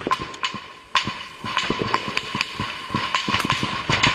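Gunfire from a firefight: irregular rifle shots, several a second at times and uneven in loudness, with the loudest about a second in.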